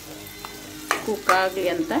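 Brinjal and tomato masala sizzling in a pan while a spoon stirs it, with a steady frying hiss. A voice comes in about a second in.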